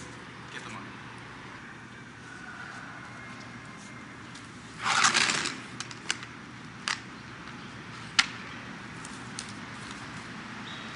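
A hard-shell briefcase being handled on concrete. A short scraping rush comes about halfway through, then a few sharp clicks follow as the case's latches are snapped open, over a steady background hum.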